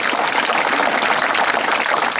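Crowd applauding: many hands clapping at once in a dense, steady clatter.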